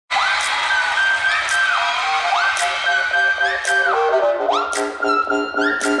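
Upbeat K-pop dance track intro: a lead melody that slides up into each of three phrases, over stepping bass notes and regular percussion hits. A singer's shout of "Yeah!" comes in right at the end.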